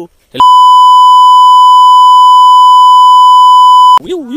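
A single loud, steady electronic beep at one fixed pitch, dubbed over the soundtrack in editing: the standard censor bleep. It starts about half a second in, holds unchanged for about three and a half seconds with a harsh, clipped edge, and cuts off sharply.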